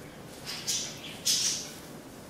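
Two quick swishes of a vent brush drawn through hair and a hairpiece, the second louder.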